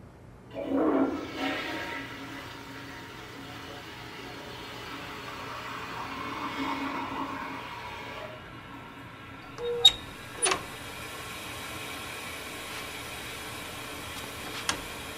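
Rushing water that swells suddenly and fades away over several seconds, followed by two sharp clicks about ten seconds in.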